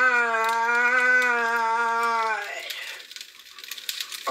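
A man's voice holding one long sung note that wavers slightly and stops about two and a half seconds in, followed by a faint hiss.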